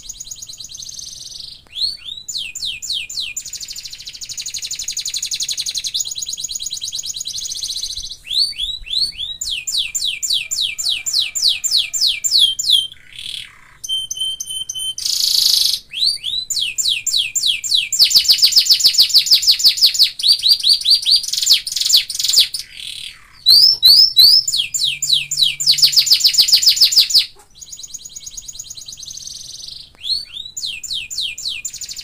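Domestic canary singing a long song made of fast trills, each a rapid run of repeated high notes, some sliding downward, broken by short pauses between phrases.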